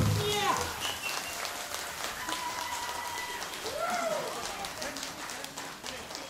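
Audience applauding, with scattered whoops and cheers, right after a big band cuts off its final chord. The clapping thins out as it goes on.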